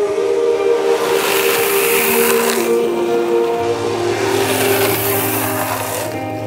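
Longboard wheels sliding across asphalt, a loud hiss in two long slides, the first about a second in and the second near the end, over background music.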